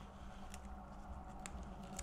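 Quiet room tone with a steady low hum, and two faint light ticks as hands press sheet of wet plastic window film against the glass.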